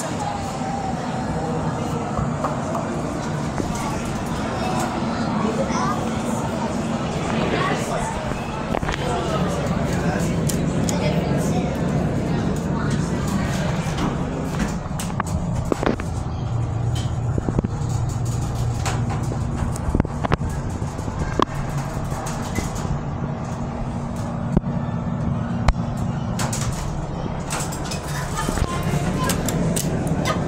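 Dover Impulse hydraulic glass elevator running with a steady low hum, most pronounced in the second half, under background chatter of people talking, with a few sharp clicks along the way.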